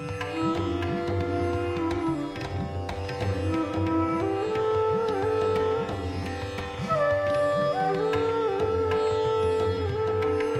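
Background music: an Indian-style instrumental with a plucked string melody, sitar-like, whose held notes bend in pitch over a steady low accompaniment.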